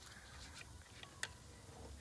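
Near quiet, with a few faint small clicks from hands starting the bolts of a 4L60E transmission's pressure switch manifold plate. The sharpest click comes just past a second in.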